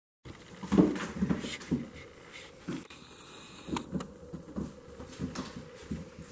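A cat batting and pouncing on a piece of food on a hardwood floor: irregular soft knocks and scuffs of paws and the morsel on the wood, the loudest a little under a second in.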